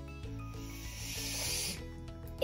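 A child's long sniff through the nose, a hiss lasting about a second and a half, over steady background music.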